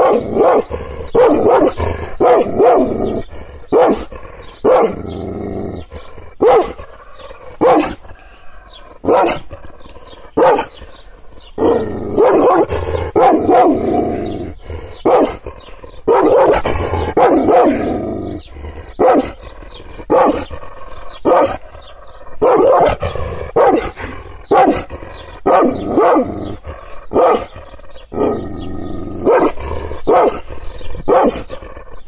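Kangal shepherd dog barking angrily and without let-up: deep barks about one a second, with a few longer, drawn-out runs. It is aggressive barking, the dog provoked by hand gestures.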